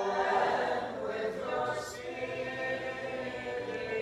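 Several voices singing an a cappella Byzantine liturgical chant response, with sustained, held notes.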